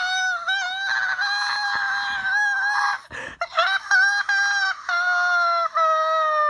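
A person's high-pitched screeching voice, held in long, nearly level notes with short breaks, one about three seconds in.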